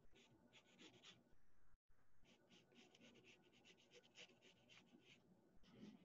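Faint pencil strokes scratching on paper as a line is sketched: a quick series of short strokes, several a second, with a brief cut-out of all sound a little under two seconds in.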